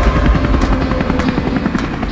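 Light helicopter with its rotor running, a fast, steady chopping beat, with background music fading under it.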